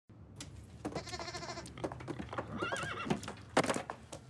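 Cartoon animal characters making bleat-like calls with a quavering, warbling pitch, mixed with scattered sharp clicks.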